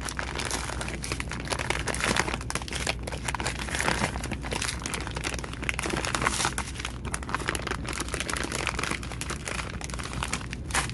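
Resealable plastic bags full of round stone beads being picked up and handled, the plastic crinkling and crackling continuously with many small sharp crackles.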